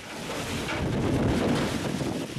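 Storm wind blowing hard against the microphone during a snowfall: a steady rushing noise that grows louder over the first second.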